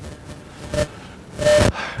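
A quiet room with a faint short sound about three-quarters of a second in, then a brief, sharp intake of breath near the end, just before speech resumes.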